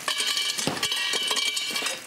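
Ice cubes tipped from a silicone tray clattering into a glass vase against a glass bottle: a quick run of clicks, with the glass ringing on under them.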